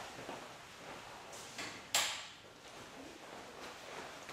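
A single sharp click about halfway through: the room's wall light switch being flipped off. A short rustle of movement comes just before it.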